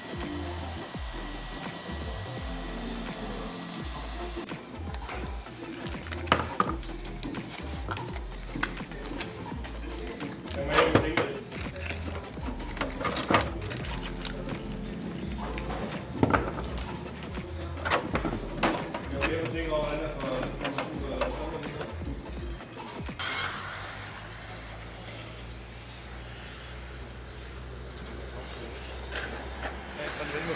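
Sharp clicks and knocks of hard plastic being handled as 3D-printed tire heaters are fitted onto an RC touring car's wheels. From about 23 seconds in, thin high whines rising and falling over a hiss: electric RC touring cars running on a track.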